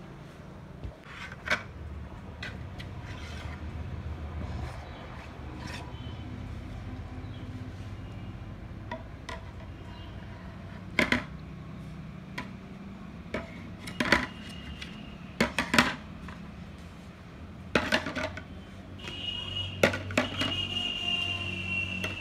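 Plastic stacking-toy rings clacking against each other and the toy's post, a scattering of sharp knocks every few seconds over a steady low hum. A steady high tone comes in near the end.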